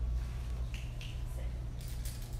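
Steady low hum in the hall, with a few faint short clicks and chirps about a second in and a sharper click near the end.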